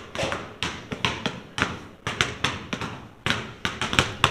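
A basketball being dribbled on a hard floor: a steady run of bounces, about two to three a second.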